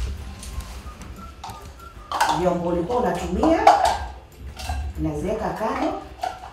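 Voices talking over light kitchen clatter of a bowl and utensils being handled on a counter, with a single dull thump at the very start.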